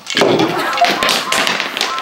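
The pieces of a monkey-balancing stacking game collapse and clatter onto the tabletop: a loud crash, then a rapid scatter of small clicks and knocks as the pieces bounce and roll.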